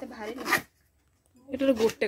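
Cardboard product box being handled and slid open, with a short zip-like scrape about half a second in, amid a woman talking.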